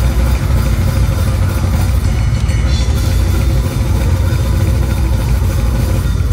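Live metal band playing, heard from the stage beside the drum kit: fast, dense drumming with a heavy, rumbling low end that runs unbroken, with a sustained guitar note above it.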